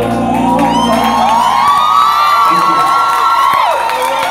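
An audience cheering, whooping and shouting at the end of a karaoke song, while the last notes of the backing music fade out in the first second or so.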